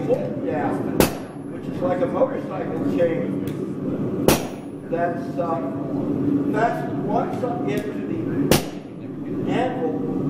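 Three blacksmith's hammer blows on red-hot steel at the block, about a second in, at four seconds and at eight and a half seconds, the first two leaving a short metallic ring.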